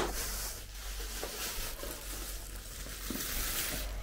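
A plastic bag rustling and crinkling as it is handled: a soft, fairly even crackle with a couple of faint ticks.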